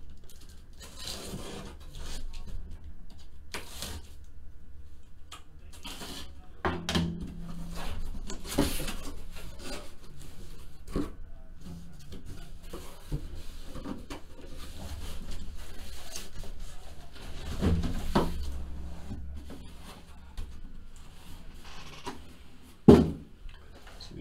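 A cardboard shipping case being opened and handled: irregular scraping and rubbing of cardboard with scattered knocks, over a low steady hum. A single sharp knock near the end is the loudest sound.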